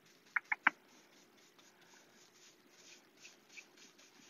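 Small flat paintbrush being stroked over a chalk-painted wooden cabinet door, a series of faint, soft scratchy strokes as glaze is worked into the panel. Three quick short ticks come within the first second and are the loudest sounds.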